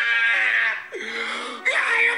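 A man wailing loudly in long, drawn-out cries, one sliding down in pitch about a second in.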